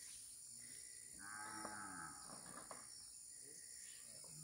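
A cow mooing once, faint, a single call of just over a second that rises and falls in pitch, about a second in.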